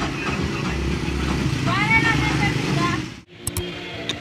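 A motor vehicle engine running steadily, with a brief rising-and-falling voice call about two seconds in. The sound cuts off abruptly a little after three seconds.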